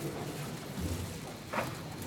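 A boat's motor idling low and steady under a faint haze of wind and water noise, with one short, sharper sound about one and a half seconds in.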